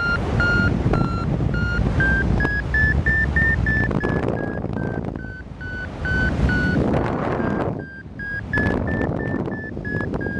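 Paragliding variometer beeping its climb tone, short beeps about two to three a second whose pitch rises as the lift strengthens and falls back, a sign of climbing in a thermal. Wind noise rushes on the microphone underneath, with a short lull near the eight-second mark.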